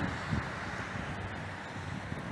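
Steady background noise between spoken phrases: an even hiss with a low rumble and no distinct events.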